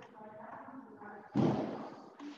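Soft voice-like sounds, then a sudden loud thud a little over a second in that dies away quickly.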